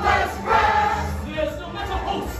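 A mixed group of men's and women's voices singing together as a chorus.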